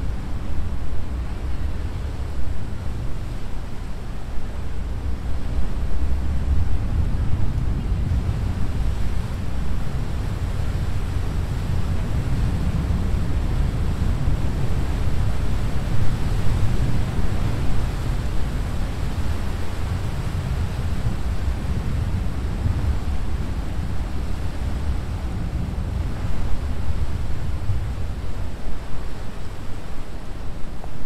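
Low, steady rumble and hiss of a large Freshwater-class diesel ferry manoeuvring onto its wharf, propellers churning the water, mixed with wind rumbling on the microphone.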